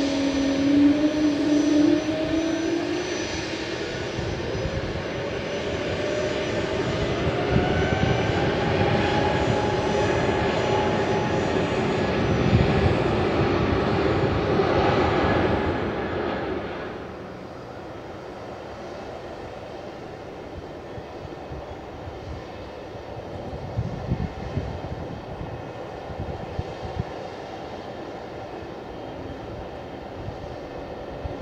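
Aircraft engines whining, the pitch rising slowly, loud for about the first sixteen seconds. The sound then drops away suddenly to a quieter engine rumble.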